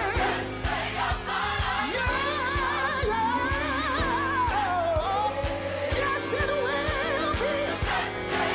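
Live gospel music: a woman sings the lead line with wide vibrato while backing singers join in, over a band with a steady beat.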